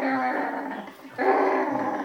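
A dog play-growling in excitement at its reward, two drawn-out growls of about a second each, the second starting a little past the middle.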